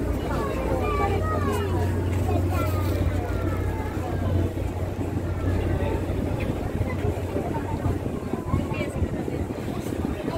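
Steady low drone of a river boat's engine, with indistinct voices chattering over it, most plainly in the first few seconds.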